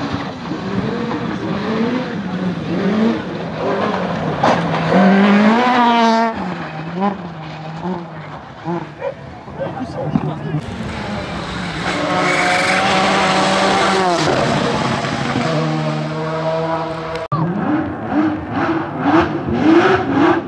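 Rally car engines at full throttle on a gravel stage: an Opel Adam rally car revving hard, its pitch climbing and then dropping sharply with each gear change. This is followed by a long, steady, high-revving run from a car. After an abrupt cut near the end, a Porsche 911 rally car's flat-six rises in pitch as it accelerates.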